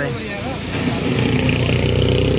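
A motor vehicle engine running nearby, a steady low drone that builds about half a second in.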